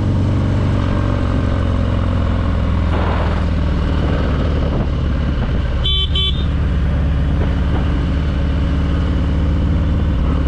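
The 117 cubic-inch V-twin of a 2020 Harley-Davidson Fat Boy, fitted with a Screamin' Eagle Stage 4 kit, running steadily at low cruising speed. About six seconds in there are two short, high beeps in quick succession.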